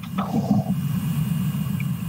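Low, steady rumbling background noise on an open video-call microphone, with a faint short sound about half a second in.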